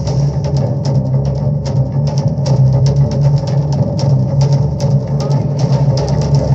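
1960s rock film theme music with a busy drum-kit beat over a strong, steady bass.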